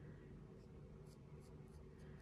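Faint, short scratchy strokes of an eyebrow pen's tip flicked across the skin of the brow, several in quick succession, over quiet room tone.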